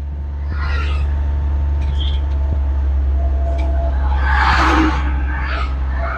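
Tata Intra V20 pickup's 1199 cc engine running with a steady low drone as the truck is driven. A rushing hiss swells about four seconds in and fades within a second.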